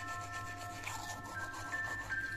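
Toothbrush scrubbing teeth, a quiet scratchy scrubbing, under soft background music that holds a few long notes.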